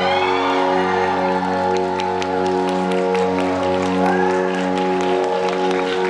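The closing chord of a live pop ballad held steady through the concert sound system, with high voices from the crowd rising and falling over it and scattered claps from about two seconds in.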